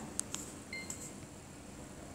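Low room tone with a few light clicks and one short electronic beep about three-quarters of a second in.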